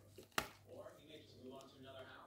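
Handling noise from a plastic cassette recorder turned over in gloved hands: one sharp click about half a second in, over a faint steady hum.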